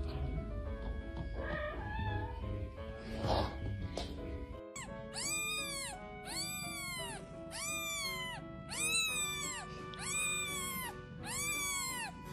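Newborn kitten mewing over and over, thin high cries that rise and fall, about one a second from about five seconds in. Background music plays throughout.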